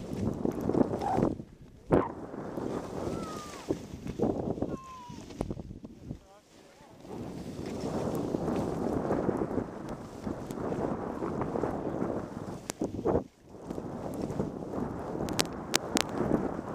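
Wind rushing over the microphone of a head-mounted camera during a downhill ski run, mixed with skis hissing over the snow. The rush dips briefly about six seconds in and again about thirteen seconds in, and a few sharp clicks come near the end.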